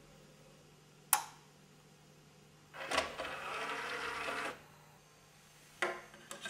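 A sharp button click, then the motorised disc tray of a disc player sliding out with a steady whir for nearly two seconds, followed near the end by light clicks as a disc is set into the tray.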